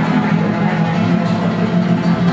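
Live Latin jazz played on guitar, running continuously at a steady loudness.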